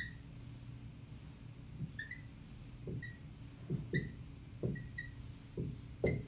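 Dry-erase marker squeaking against a whiteboard in short, high chirps as axis lines and labels are drawn, with soft taps in between.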